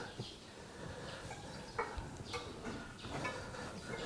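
Faint close-up handling of steel piano wire being threaded by hand into the hole of a tuning pin, with a few small light clicks.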